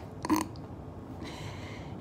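A brief vocal sound from a person about a quarter of a second in, then a quiet pause with faint steady hiss.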